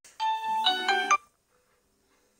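Smartphone ringtone for an incoming call: a short melody of bright, clean tones that stops suddenly after about a second.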